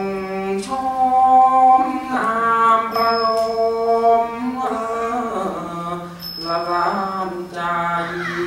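A solo singer performs a slow, drawn-out Thai 'khap so' song, holding long notes that bend and slide between pitches. A ching (small Thai hand cymbals) rings out about every three seconds, marking the beat.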